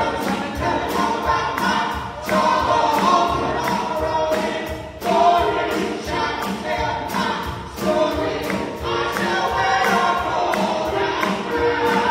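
Gospel praise team of three voices singing together with a live band, a drum kit keeping a steady beat under the sustained sung notes.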